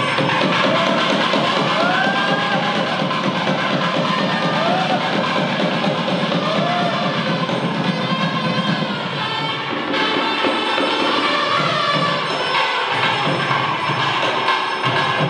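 Loud, dense temple ritual music, a continuous wash of drumming and ringing, with a pitched melody that slides up and down every couple of seconds and a crowd calling out over it.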